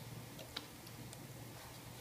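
Faint light click of a small plastic model-kit part, a spare head mask, being set down on a clear plastic display base, about half a second in, over quiet room tone.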